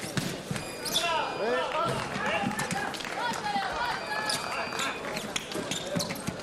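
Fencing shoes squeaking on the piste in quick chirps, mixed with thuds and stamps of sabre footwork. Two brief steady high tones sound, one about half a second in and one about four seconds in.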